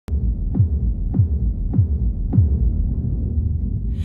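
Electronic intro sound: a low, steady drone with four downward pitch sweeps, one a little over every half second, opening with a sharp click.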